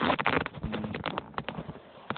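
Handling noise from a tablet's leather protective case: a rapid, irregular run of scuffs and clicks as the tablet is moved about in the hand, thickest at the start and thinning out.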